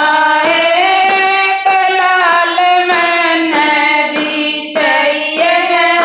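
Women singing a Haryanvi devotional bhajan together in long held notes. Their hand claps keep a steady beat of about one and a half claps a second.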